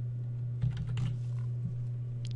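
Computer keyboard being typed on: about three keystrokes finishing a word, over a steady low hum.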